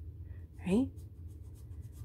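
HB graphite pencil scratching on sketchbook paper in a quick run of short, faint strokes, shading in a shadow.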